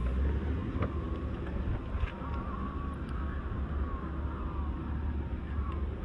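Power liftgate of a 2015 Ford Expedition opening: a faint click about a second in, then the faint whine of the liftgate motor for a few seconds, over a steady low rumble.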